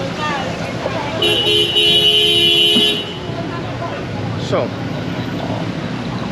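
A vehicle horn sounds one long steady blast of about two seconds, starting about a second in, over the hum of street traffic.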